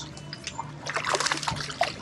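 A small hooked fish splashing at the water's surface as it is reeled in, dragging a clump of weeds, with a run of splashes about a second in.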